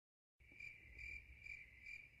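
Faint cricket chirping, a steady high trill pulsing about twice a second, coming in about half a second in after dead silence: the comic awkward-silence sound effect.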